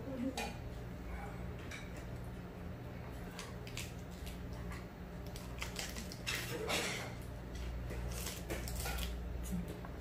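Metal chopsticks clicking lightly on porcelain dishes and lettuce leaves rustling as a large lettuce wrap of boiled pork is folded. A louder rustling crunch comes a little after six seconds, as the wrap is bitten into, over a low steady hum.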